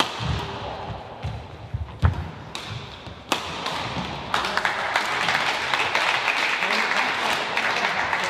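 Badminton rally: thuds of feet on the hall floor and a few sharp shuttlecock hits, the loudest about two seconds in. Then spectators applaud from about four seconds in to the end.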